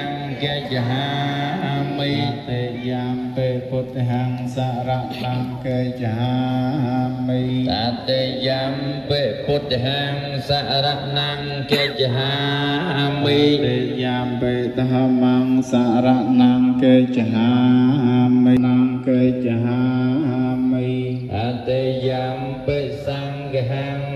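A large crowd of Buddhist laypeople chanting in Pali together, a steady, drone-like unison recitation as they take the precepts.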